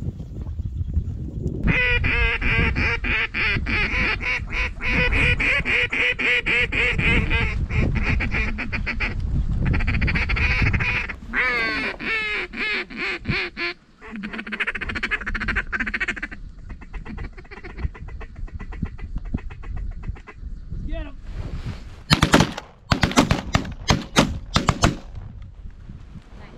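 A big flock of snow geese and ducks calling over the decoys, a dense wall of overlapping honks and quacks that thins out after about 16 seconds. Near the end comes a rapid volley of several shotgun shots fired at the incoming birds.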